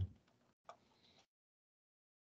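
A single faint keyboard keystroke click, followed by dead silence.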